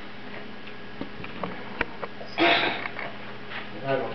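One short sniff about halfway through, preceded by a few faint light clicks, over a low steady room hum.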